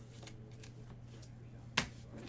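Gloved hands handling a trading card in a clear rigid plastic card holder: a few light clicks and rustles, then one sharp plastic click near the end.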